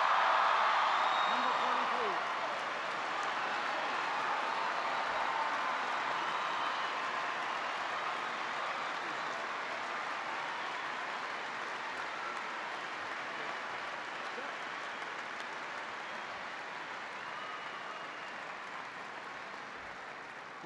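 Large audience applauding in a hall. The clapping is loudest at the start and slowly tapers off.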